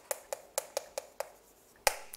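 Chalk tapping and scraping on a chalkboard during handwriting: a quick run of short taps, a brief pause, then one sharper tap near the end.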